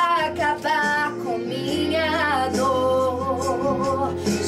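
A woman singing a Portuguese gospel ballad with acoustic guitar accompaniment. She sings a short phrase, then holds one long, slightly wavering note through the second half.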